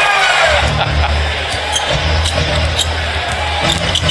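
Arena music with a deep, steady bass line, its note changing every second or so, over a noisy basketball crowd.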